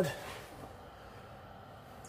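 The end of a spoken word, then faint steady room noise with no distinct events: a quiet pause.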